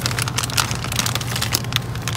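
Plastic packaging crinkling and crackling in rapid, irregular crackles over a steady low hum from the store's freezer cases.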